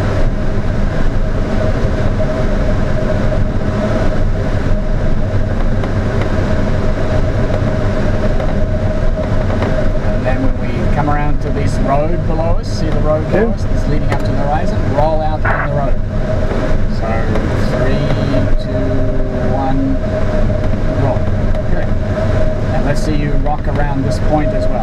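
Steady rush of airflow in the cockpit of a Schleicher ASK 21 training glider in flight at about 55 knots, with a constant thin whistle running through it.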